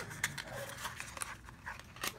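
A dog whimpering and panting in short bursts, over light clicks and rustles of small items being handled.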